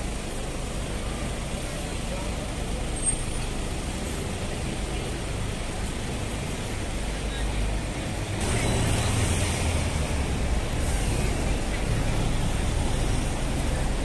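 Street traffic noise: a steady low rumble of road vehicles with passers-by's voices. It grows louder about eight seconds in as a heavy vehicle passes close.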